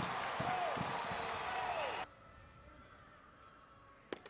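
Ballpark crowd noise with a faint voice in it, cutting off abruptly about halfway through to near silence.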